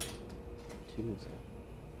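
Faint clicks of equipment being handled over a low steady hum, with a brief voice sound about a second in.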